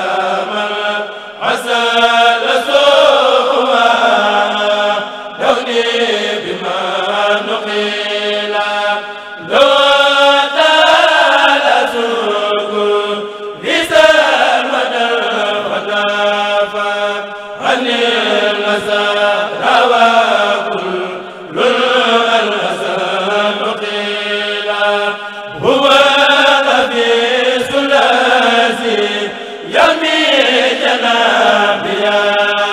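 A Mouride kurel, a group of men chanting a xassida (Sufi devotional poem) in unison without instruments. The voices rise together in long, held phrases that begin anew about every four seconds.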